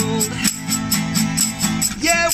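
Two acoustic guitars strumming chords, with a tambourine keeping a steady beat of about five hits a second. A held sung note falls and ends just after the start.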